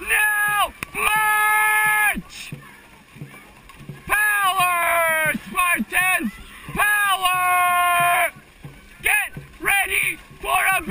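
A dragon boat caller shouting about five long, drawn-out calls, each held for a second or so, over the splash of paddles in the water.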